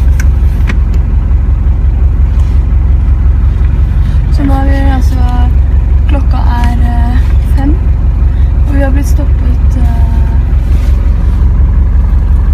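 Steady low rumble of a stopped bus with its engine idling. Voices speak in short stretches from about four seconds in until near the end.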